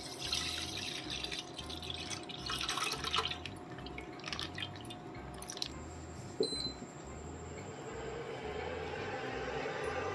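Milk poured from a plastic packet into a stainless steel pot, splashing and trickling in bursts for the first few seconds. A short electronic beep from the induction cooktop comes about six and a half seconds in, over a steady faint hum.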